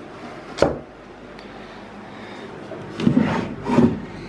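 A single sharp knock about half a second in, then a desk drawer being slid open, with two short scraping rubs near the end.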